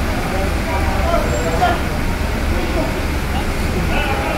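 Steady low engine rumble in a ferry's enclosed vehicle deck, with indistinct voices talking in the background.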